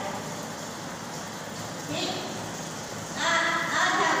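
A voice speaking over steady room noise: a short sound about two seconds in, then a longer phrase near the end.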